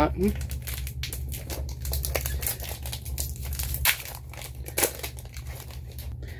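Trading card pack wrappers being torn open and crinkled by hand, a run of irregular crackles and rips.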